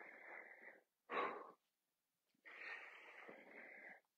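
A man breathing hard with exertion while pressing dumbbells overhead: a brief breath at the start, a sharper one about a second in, and a long breath through the second half.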